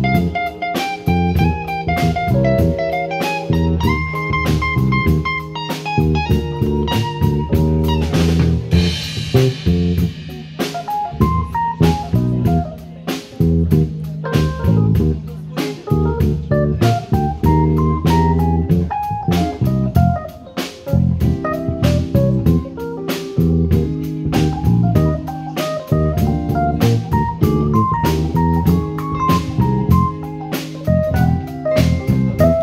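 Live band playing an instrumental blues-jazz number: electric guitar and keyboard over bass and drum kit, with a melodic line stepping up and down over a steady beat.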